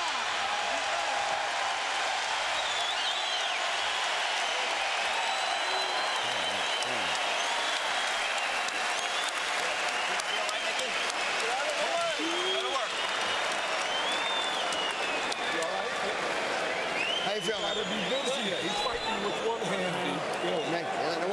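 Boxing arena crowd applauding and cheering as a round ends: a steady mass of clapping and voices, with scattered shouts rising above it.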